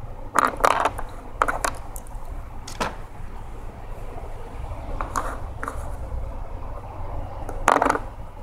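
Dice rattling as they are shaken between cupped hands: irregular sharp clicks, a few close together, then bursts about five seconds in and near the end. A steady low rumble lies underneath.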